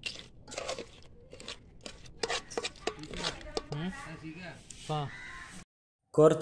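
Crab curry being mixed by hand in an aluminium pot, with irregular crunching and clicking of crab shell against the metal. A voice talks in the second half, and the sound cuts off just before the end.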